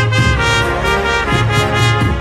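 Andalusian Holy Week processional march played by a band of brass and percussion: sustained brass chords over a low bass line that moves in steps.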